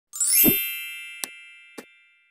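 Intro logo sound effect: a bright ringing chime that sweeps up with a low thud about half a second in and rings out slowly, with two light clicks as it fades.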